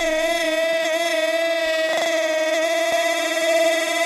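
Euro house dance music in a breakdown: a held, sustained chord with no drums or bass.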